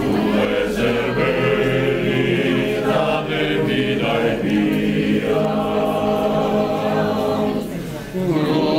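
Sardinian men's choir singing unaccompanied in close harmony, with long held chords. The phrase breaks off briefly near the end before the next one starts.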